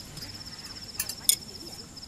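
Crickets chirring steadily, a fast pulsing trill, with two short clinks about a second in from the ceramic soup bowls being handled on the table.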